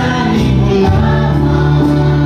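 Live gospel worship music: singing over strummed acoustic guitars and a Korg 01/W electronic keyboard.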